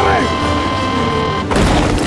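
Film-score music, then about a second and a half in a sudden landmine explosion sound effect: a deep, loud blast.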